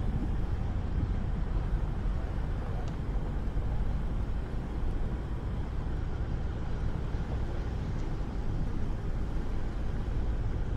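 Car driving slowly: a steady low engine rumble with road noise, holding even throughout.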